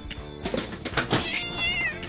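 Cartoon sound effects over background music: a few quick clicks, then a short, high, wavering squeak near the end.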